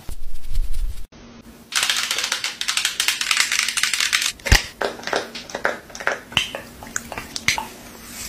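Long acrylic fingernails tapping and scratching on a plastic lotion bottle: about two seconds of fast, dense scratching, then slower separate taps and clicks, a few a second.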